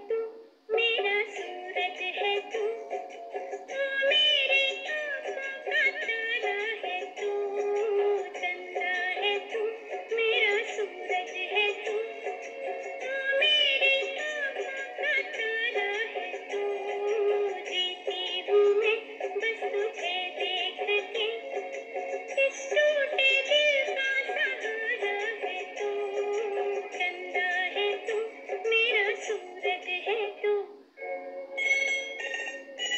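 A pop song playing, a sung melody over a steady musical backing, with a thin sound lacking any bass.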